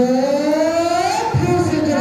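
A man's voice holding one long drawn-out note that rises steadily in pitch for over a second, then a second held note.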